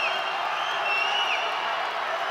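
Spectators cheering steadily, with high whoops and shrill calls carrying above the crowd noise.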